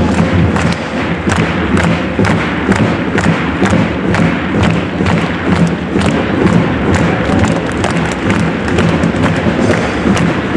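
Football supporters in a packed stadium beating drums and clapping in a steady rhythm, about three beats a second, over the general noise of the crowd.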